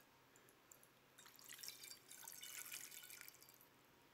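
Water poured from a brass pitcher into a basin: a few faint drips, then a soft trickle and splash starting about a second in and lasting about two seconds.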